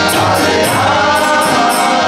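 Harmonium playing a kirtan (harinam) melody in held reedy chords, with voices singing the melody over it and a steady bright percussion beat about three strokes a second.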